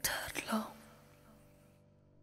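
A short, breathy whispered vocal sound lasting about half a second, then fading to near silence in the gap between songs.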